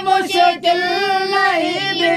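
A single high voice singing an unaccompanied devotional song, holding long, ornamented notes whose pitch slides and wavers.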